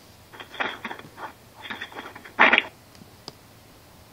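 Faint, muffled voice-like sounds coming through a telephone conference line, in a few short bursts with the loudest about two and a half seconds in, then a single click.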